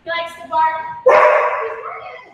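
A dog barking: a few short barks, the loudest starting suddenly about a second in.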